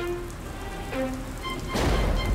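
Cartoon rain sound effect falling steadily under soft background music, with a rumble of thunder swelling in near the end.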